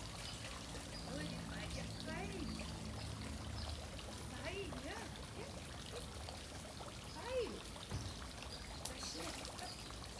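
Pool water trickling and lapping gently as a golden retriever swims across a swimming pool, with faint short voice-like calls scattered over it.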